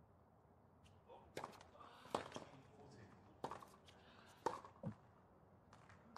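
Tennis ball struck by rackets in a rally: about five sharp hits roughly a second apart, with fainter ball bounces and clicks between them over a quiet background.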